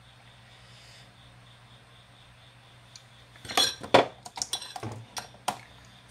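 Kitchen utensils and dishes clattering: a quick, uneven run of knocks and clinks with short ringing starts a little past the middle. Before it there is only a faint steady low hum.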